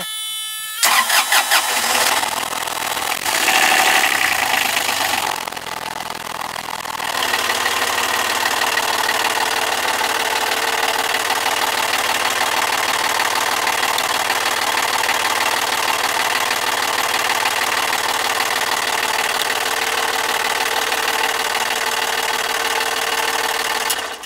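Cold start of a Kubota-based Nanni marine diesel. The starter cranks for about a second, the engine catches and runs unevenly for a few seconds, then settles into a steady idle and is shut off at the end.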